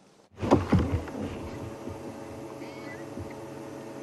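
A steady low hum holding several constant pitches. It sets in suddenly about a third of a second in, with a few short, louder sounds at its start.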